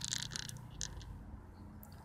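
Two glass marbles, the agitator balls from a spray-paint can, rolling on paving slabs after being tipped out of the can, with a few light clicks in the first second.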